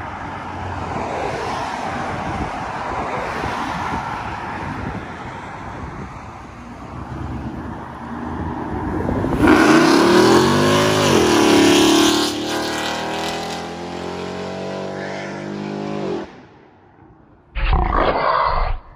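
Road traffic passing, then about halfway through a supercharged Ford F-150 pickup's V8 accelerates hard from a stop. Its loud engine note rises, dips at a gear change and climbs again, then cuts off abruptly near the end.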